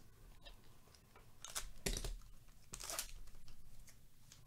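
The wrapper of a Topps Heritage baseball card pack being torn open and crinkled by hand, in a few short rips about halfway through and again near the end.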